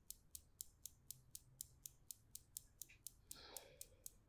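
Near silence: room tone with a faint, regular ticking about four times a second, and a brief faint noise a little after three seconds in.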